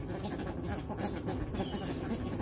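A flock of American white ibises feeding on food scattered over concrete: soft low calls and many quick bill taps, with one faint high chirp about one and a half seconds in.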